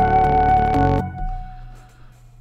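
Layered trap melody playing back from the software instruments: sustained synth and piano-type notes with a flute line on top. Playback stops suddenly about a second in, leaving a short fading tail.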